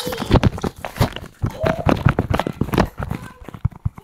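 Quick, irregular footsteps and thumps on a wooden floor, mixed with rubbing and knocking from a hand-held phone being carried at a run.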